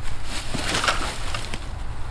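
Climbing rope rustling and sliding through gloved hands as a hitch tied around a log is spilled and released, over a steady low rumble.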